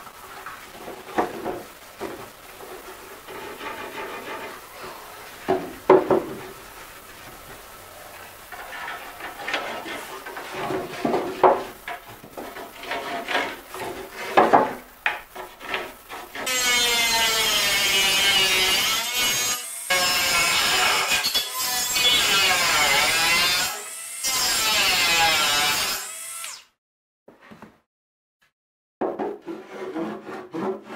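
Cut plywood panels being handled and fitted together, with irregular wooden knocks and scrapes. About halfway through, a loud power saw cuts plywood in four runs of a few seconds each, then stops abruptly. A few more wooden knocks come near the end.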